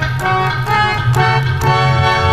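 Sikh kirtan accompaniment between sung lines of a hymn: a harmonium holding and changing chords, with hand-drum strokes about twice a second.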